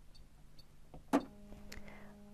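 A single sharp click about a second in from a button press on a computerised sewing machine's control panel, selecting stitch number 12, with a few fainter ticks around it. A faint steady hum follows the click.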